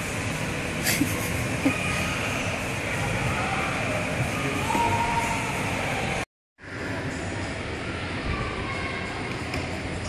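Steady rumble of a plastic pedal tractor's wheels rolling over a hard floor, amid indoor play-hall hubbub with faint voices and background music. The sound cuts out briefly a little after six seconds in.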